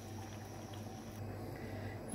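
Hot milky coffee pouring from an aluminium saucepan into a ceramic mug: a faint, steady liquid pour, with a low steady hum beneath it.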